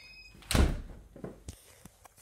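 A single heavy thump about half a second in, followed by a few lighter knocks.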